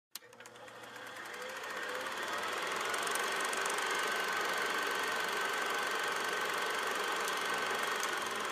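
Logo sound effect: a steady mechanical whirr with rapid, even clicking, fading in over the first two to three seconds and then holding level, with a thin high hum running through it.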